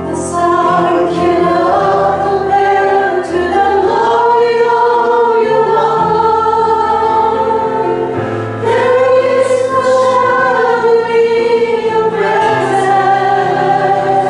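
Worship team singing a slow contemporary praise song in held, legato phrases over sustained accompaniment. A new sung phrase begins a little past halfway.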